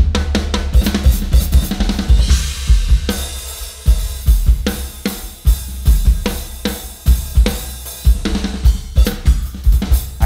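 Tama drum kit with Zildjian cymbals played hard with sticks: rapid bass drum kicks under snare hits and cymbal crashes, with a cymbal wash swelling about two seconds in.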